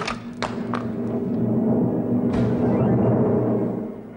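Dramatic film-score cue: a few sharp hits, then a low rolling rumble that swells louder and dies away near the end. It is the sound cue for the devil's magical arrival.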